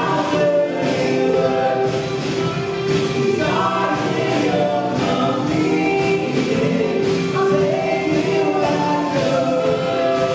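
Live contemporary Christian worship band playing a song, a woman singing lead over acoustic and electric guitars, drum kit and piano.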